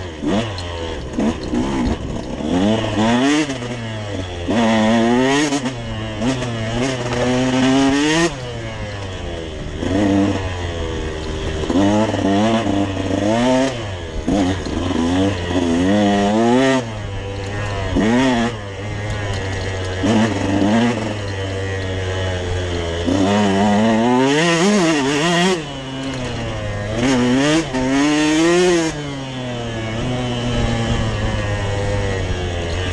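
Dirt bike engine revving as it is ridden off-road: its pitch climbs under throttle and falls away again, over and over.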